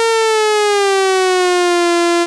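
VirSyn AddStation additive synthesizer playing one held note that glides slowly and smoothly down in pitch as the finger slides across the on-screen keyboard with quantize off: a portamento glissando.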